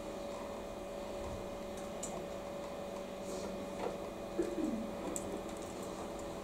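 Quiet room tone with a steady electrical hum, a few faint clicks and rustles, and a short falling murmur or creak a little past the middle.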